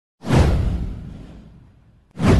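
A whoosh sound effect with a deep rumble under it. It starts suddenly about a fifth of a second in, sweeps downward in pitch and fades away over about a second and a half.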